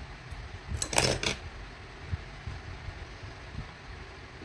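Scissors snipping through acrylic crochet yarn about a second in, after a finishing chain stitch, over low rustling of hands handling the crochet piece.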